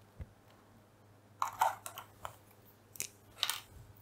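A few short scratchy taps and rustles of a fineliner pen and paper being handled on a desk, in small bursts spread over a few seconds, the loudest about a second and a half in.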